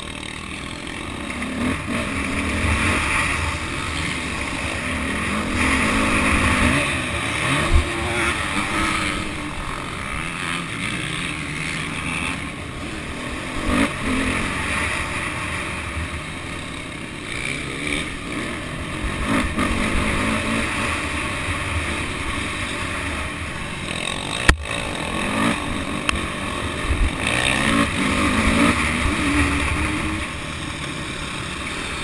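Motocross dirt bike engine being ridden hard, its revs rising and falling repeatedly through gear changes and corners, heard close up from an onboard camera. A couple of sharp knocks, one about a quarter of the way in and a louder one near the end.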